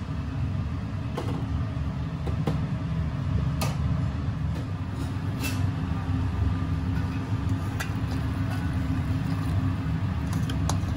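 Steady low rumble of kitchen equipment, with about half a dozen light clinks of stainless steel bowls and utensils scattered through it.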